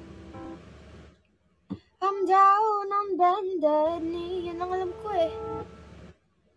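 Music: an instrumental passage stops about a second in, a single click follows, then a song with a high female singing voice starts abruptly about two seconds in and cuts off just before the end.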